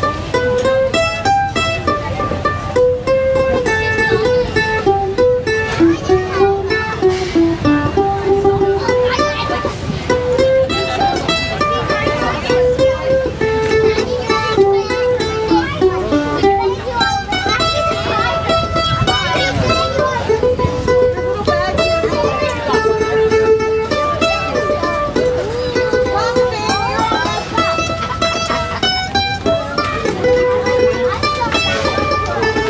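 Handmade mandolin played solo: a picked single-note melody, some notes held with fast tremolo picking.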